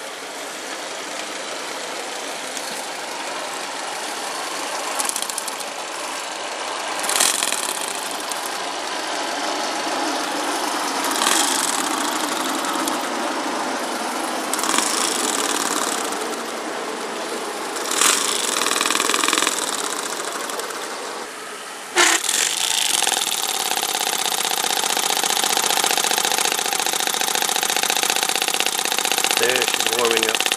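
Hand-held electric starter spinning the tiny single-cylinder gasoline engine (3/8" bore, 1/2" stroke) of a model locomotive, cranking in repeated surges. About three-quarters of the way through there is a sudden loud burst, after which the sound settles into a steady, even mechanical run.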